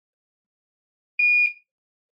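A single short electronic beep, steady and high-pitched, lasting about a third of a second, from a bench DC power supply as its output is switched on to power a phone logic board.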